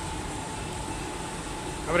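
Steady background hum of a garage workshop, with a faint steady whine running through it.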